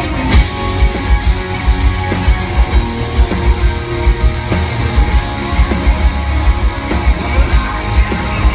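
Metal band playing live, heard from within the audience: distorted electric guitars over drums with frequent heavy low-end hits.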